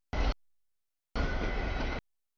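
Freight train cars rolling past a grade crossing: a steady rumble and hiss. It comes in a short burst near the start, then cuts out abruptly to dead silence, and resumes steadily from about halfway.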